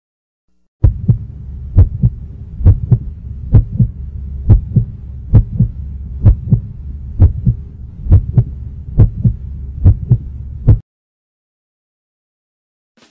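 Human heartbeat sound effect: paired lub-dub thumps, a little under one beat a second, over a steady low hum. It starts about a second in and cuts off suddenly near the end.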